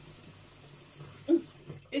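Kitchen tap running faintly into the sink as a small part is rinsed, a steady hiss that falls away about three-quarters of the way in.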